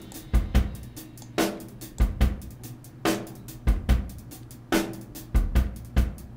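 Stock rock drum loop at 72 bpm, with kick, snare and hi-hat, played through a convolution reverb. The reverb is loaded with a small-room impulse response made from a white-noise burst on a Behringer Neutron synthesizer.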